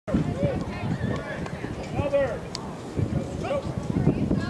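Players and spectators calling out across a youth baseball diamond, with drawn-out shouts about half a second and two seconds in.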